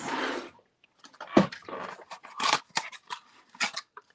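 Irregular clicks, crackles and rustles of craft supplies being handled on a desk as a roll of glue dots is picked up.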